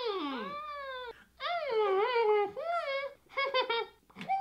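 Drawn-out wordless vocal sounds: a long cry that slides down in pitch, then after a brief break several held, wavering tones.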